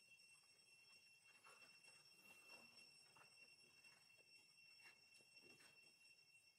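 Near silence: faint background with a few steady high-pitched tones and occasional faint ticks.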